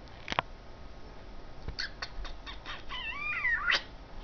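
A run of quick clicks, then a short wavering call from an animal.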